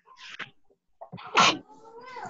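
A person's short, sharp breathy vocal burst about one and a half seconds in, after a faint hiss near the start.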